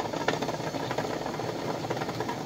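A pot of water at a rolling boil, bubbling steadily, with the sealed tin cans inside rattling and clicking against the pot.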